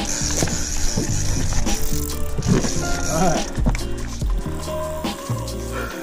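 Background music with a steady bass line, and brief snatches of voices.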